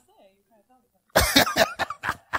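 A loud cough about a second in, followed near the end by short, separate bursts of laughter.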